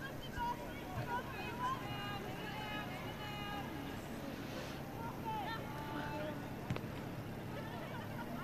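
Faint calls and shouts of players and coaches on an outdoor football pitch, over a steady low background hum, with a single sharp knock about two-thirds of the way through.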